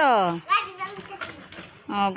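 A young child's high voice calling out: a long, drawn-out cry that falls in pitch at the start, a short call after it, and another drawn-out call beginning near the end.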